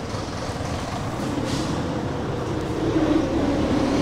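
Engine of a heavy road vehicle rumbling steadily, growing a little louder near the end, with a brief hiss about a second and a half in.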